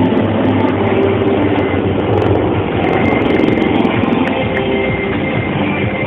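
Helicopters flying a low formation pass overhead: a loud, steady drone of rotors and turbine engines.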